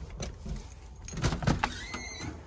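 A house front door being opened by its lever handle: a run of sharp clicks and rattles from the latch and handle, loudest about a second and a half in. A short high squeak starts right at the end.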